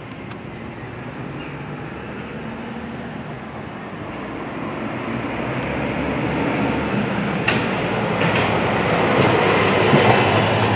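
A train running past, its rumble and wheel noise growing steadily louder, with a couple of sharp clicks near the end.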